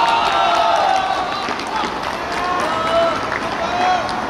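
Several football players shouting and cheering together, celebrating a goal just scored. The shouts are loudest in the first second and swell again about three seconds in.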